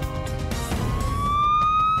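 A siren wail starting about a second in and rising slowly in pitch, over a music bed.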